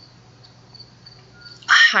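A pause in a woman's speech: faint room hiss with a thin, high, steady whine, and her voice resumes near the end.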